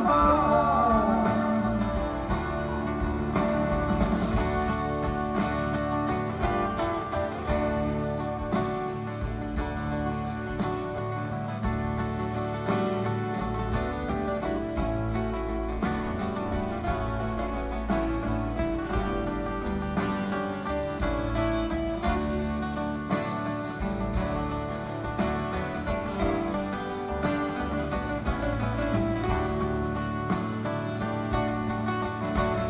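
Live band playing a long instrumental passage of a folk-rock song with no vocals, led by guitars over bass and drums.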